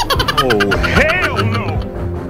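Wordless voice sounds that swoop up and down in pitch, over background music.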